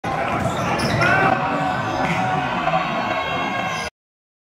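Basketball dribbled on a hardwood gym floor during a game, with voices and court noise echoing in the gym. The sound cuts off suddenly just before the end.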